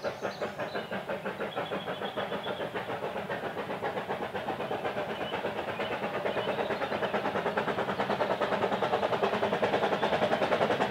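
Narrow-gauge steam locomotive Prince, an 1863 George England engine, working a train of coaches: a quick, steady beat of exhaust chuffs from its chimney that grows louder as it approaches.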